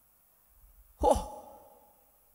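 A man's short sigh into a handheld microphone about a second in: a sudden breathy, voiced exhale that falls in pitch and trails off.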